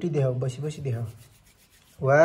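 A low voice, likely a man's, speaking briefly for about the first second over a light rubbing rustle, then a quiet stretch.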